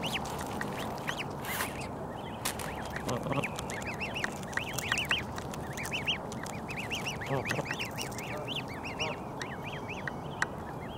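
Canada goose goslings peeping: many short, high-pitched chirps overlapping in a continuous chorus, several a second, as a brood feeds close by.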